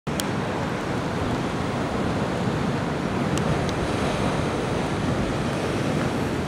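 Steady rushing noise of wind buffeting the microphone outdoors, with a few faint clicks.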